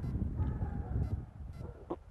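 Low, steady outdoor background rumble with no clear event, and a short sharp sound right at the end.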